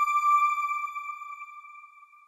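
A single electronic chime tone from a TV channel's logo sting, held as one note and fading slowly away.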